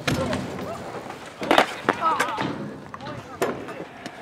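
BMX bike riding a skatepark quarter pipe: tyres rolling on the ramp with a few sharp clattering knocks, at the start, about a second and a half in and near the end, as the wheels hit and land.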